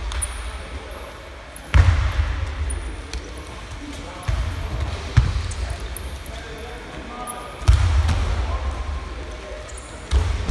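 Wrestlers being taken down onto a foam wrestling mat: heavy low thuds about two seconds in, twice around four to five seconds, and again near eight seconds, each dying away over a second or so in the hall.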